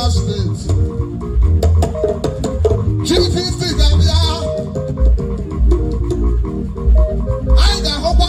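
Igbo dance music for the Koboko dance: a deep bass guitar line under a quick, repeating plucked guitar figure, with steady percussion.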